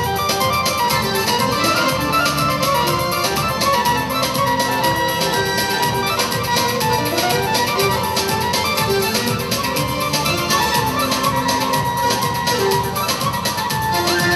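Traditional Azerbaijani wedding dance music from a live band with a keyboard synthesizer: a winding melody over a steady beat.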